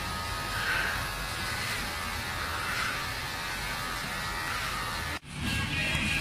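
Electric hair trimmer buzzing steadily as it is run over a customer's cheek, breaking off abruptly about five seconds in.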